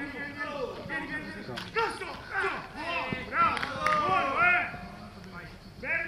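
Men's voices calling out and talking over one another on an open training pitch, loudest around the middle, with a couple of sharp knocks in between.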